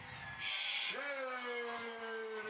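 A short high hiss-like burst, then a man's low drawn-out hum that falls slowly in pitch and is held for nearly three seconds.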